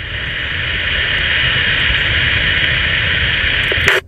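Steady static hissing from a Retevis RA86 GMRS mobile radio's speaker with the squelch open after the other station's reply, cut off abruptly near the end as the squelch closes.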